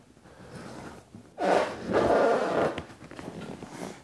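Motorcycle seat being lifted and slid off the frame of a Victory Cross Country Tour: a rough scraping rustle for about a second and a half around the middle, with fainter handling noise before it.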